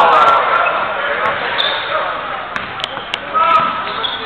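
Basketball game in a gym: many spectators shouting and talking over each other, loudest at the very start, with sharp knocks of the ball bouncing on the court, several in quick succession about two and a half to three seconds in.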